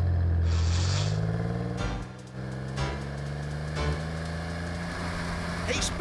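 Cartoon sound effect of an old open car's engine revving and rising in pitch as it pulls away, with a short burst of hiss about half a second in. After about two seconds the engine settles to a quieter, steady drone as the car drives on fast.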